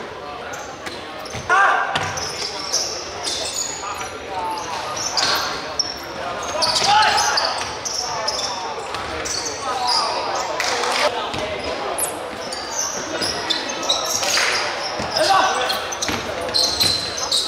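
Basketball game on a hardwood gym floor: the ball bouncing, sneakers squeaking, and players shouting, all echoing in a large hall.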